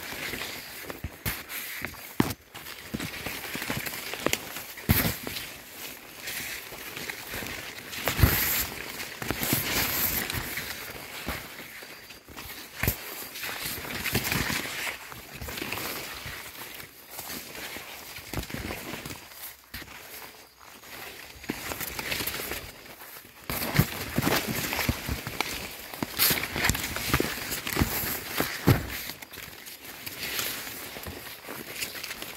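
Footsteps on soil and the rustle of maize leaves brushing past someone walking along a row of corn, with many irregular sharp knocks.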